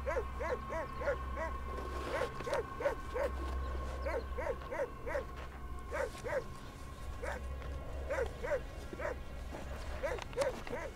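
A dog barking repeatedly in short yaps, about two to three a second, with a brief pause a little after the middle, over a steady low hum.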